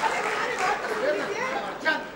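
Speech only: several voices talking at once, overlapping.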